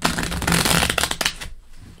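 A deck of cards riffle-shuffled by hand: a quick, dense patter of cards flicking together for about a second and a half, then trailing off.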